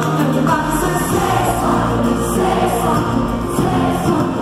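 Live pop concert music: a band playing with sung vocals, heard from the audience seats of a large arena.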